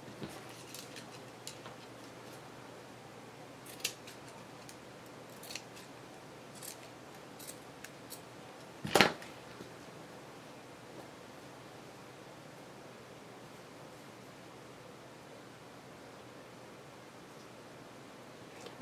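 Scissors snipping lace fabric: a scattered series of short, sharp snips over the first several seconds, then one louder clack about nine seconds in.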